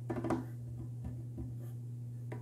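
Fingertips tapping on the lid and glass of an empty aquarium: a quick run of taps in the first half second, then a few faint ones, over a steady low hum.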